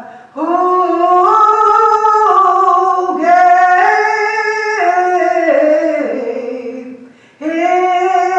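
A woman's voice singing a lined-out hymn unaccompanied, in slow, drawn-out notes that slide from pitch to pitch. One long phrase starts just after the beginning and breaks off about half a second before the end, when the next phrase begins.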